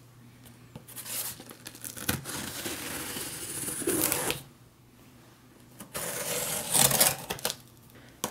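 Knife slitting the packing tape along the seam of a sealed cardboard box, a scratchy, scraping sound of blade through tape and cardboard. After a short pause, louder tearing of tape near the end.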